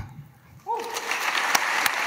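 Audience applause: after a short quiet moment the clapping starts about half a second in and builds to a steady patter, with a brief voice near its start.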